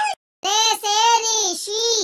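A child singing a Hindi alphabet rhyme in a high, sung voice. The singing cuts out to dead silence for a moment just after the start, then carries on.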